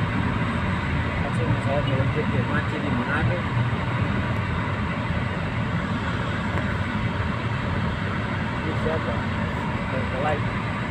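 Steady engine and road noise heard inside a moving car's cabin, a low, even rumble.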